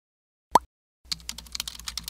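Keyboard typing sound effect: a quick run of key clicks, about eight a second, starting about a second in as text is typed onto the screen. Just before it comes one short, loud rising blip about half a second in.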